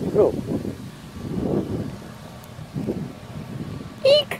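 A person's voice: a short 'oh' and a few low, murmured sounds, with light wind noise on the microphone.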